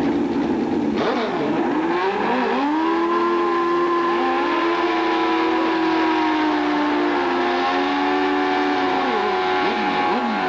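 Drag motorcycle engine revved hard and held at high revs for several seconds during a burnout, with a short dip partway and a drop near the end. A second bike's engine revs alongside.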